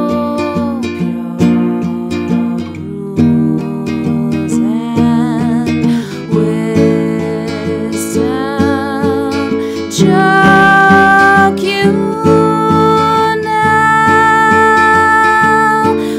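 Nylon-string acoustic guitar being played, with a woman's wordless singing over it in held, wavering notes; about ten seconds in the music gets louder and the voice settles into long steady notes.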